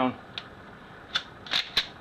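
Tomahawk pump-action shotgun being handled: a few short metallic clicks and rattles from the action and fore-end, bunched near the end.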